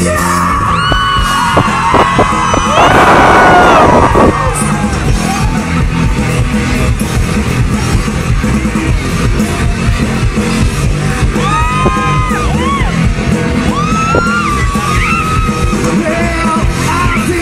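Live rock band playing loud through a PA, with drums and guitar, and a vocalist yelling and singing over it. There is a louder, denser burst about three seconds in.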